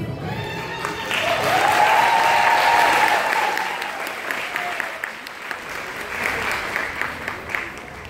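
Audience applauding and cheering as the music ends: the clapping swells about a second in, peaks with a long high cheer over it, then thins out to scattered claps.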